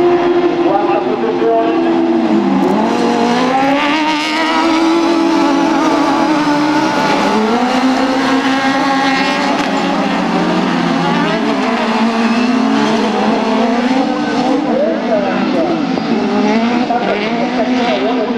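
Several 1600 cc autocross buggies racing together on a dirt track. Their engines rev high and drop back again and again as the drivers shift and work through the corners, with several engine notes overlapping.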